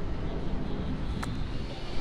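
Steady outdoor background noise with a low rumble and no clear single source, and one faint click about a second in.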